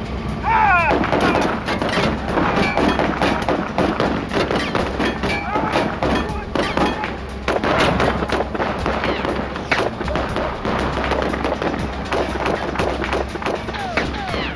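Heavy gunfire: many shots in quick succession from handguns firing at a van, going on throughout.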